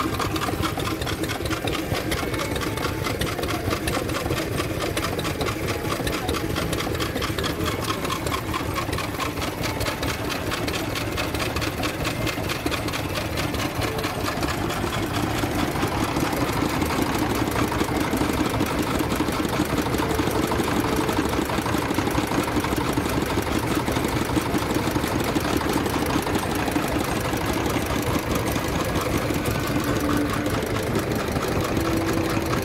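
Vintage Lister stationary engines running with a rapid, even beat that goes on steadily throughout.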